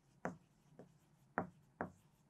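Chalk writing on a blackboard: four short, separate strokes over two seconds as a word is written out.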